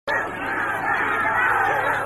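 Several people's voices chattering at once, overlapping, over a steady low hum.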